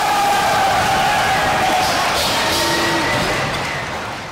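Crowd cheering and yelling, with a drawn-out shout, fading out near the end.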